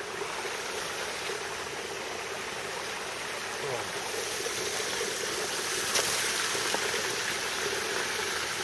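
Mountain stream running: a steady hiss of water that grows slightly louder, with one brief tap about six seconds in.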